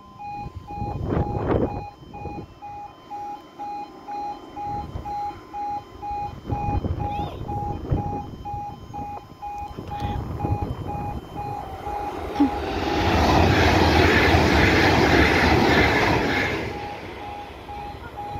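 Level crossing warning alarm beeping in a steady rhythm. About twelve seconds in, a GWR Class 800 train passes with a loud rush of wheel and engine noise that lasts about four seconds and then fades while the alarm keeps beeping.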